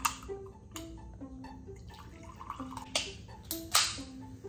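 An aluminium Monster Energy can opened with a sharp click, and the fizzy drink poured into a glass near the end, over background music with a soft melody.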